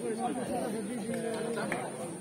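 Several people talking over one another close by: unintelligible chatter among onlookers at the edge of the field.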